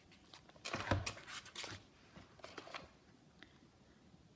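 Soft rustles and taps from hands handling a leather traveler's notebook cover and its paper inserts as it is closed and turned over: a cluster of handling noises about a second in, a shorter one past the middle, and a faint tick near the end.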